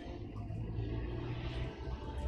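A low rumble under a hiss that swells and then fades: a whoosh-like transition effect in a documentary soundtrack.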